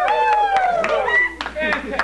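A high-pitched voice with a long falling pitch, over a few scattered hand claps.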